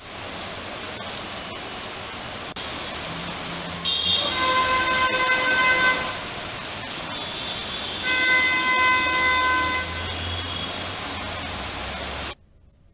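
Rain and tyres on a wet city street, with a vehicle horn honking twice, each blast about two seconds long.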